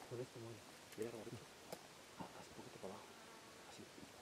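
Faint, low murmured voices in a few short snatches, too soft for the words to be made out, with quiet outdoor background between them.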